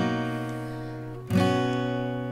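Recorded acoustic guitar strumming two chords, one at the start and one about a second and a half later, each left to ring and fade.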